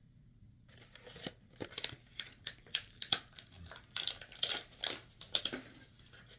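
Crinkly packaging being handled and rummaged through in a quick run of sharp rustling strokes, starting about a second in.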